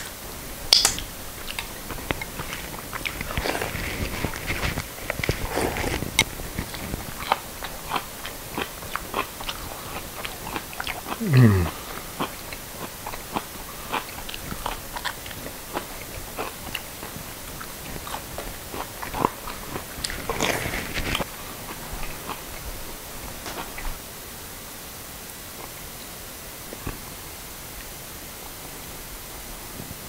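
Close-up chewing and crunching of crispy fried trout, fins and skin included, with many small irregular crackles and clicks. There is a short falling hum about a third of the way in.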